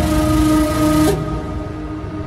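Electronic background music: a sustained synth chord over a pulsing bass beat, with the high end dropping away about halfway through.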